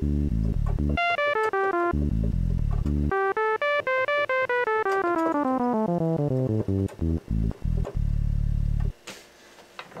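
Analog sawtooth synthesizer tone through a Synthesizers.com Q150 transistor ladder filter, played as keyboard runs. Low notes sound darker and higher notes brighter, because the filter cutoff follows the keyboard. A quick falling run comes about a second in, and a longer run rises and then falls back down to low notes from about three seconds on.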